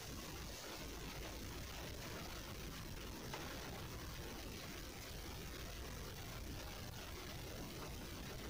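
Faint, steady background hiss in a car cabin, with no distinct events.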